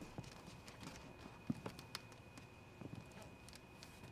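A few faint footsteps, sparse and uneven, over a steady faint high-pitched whine.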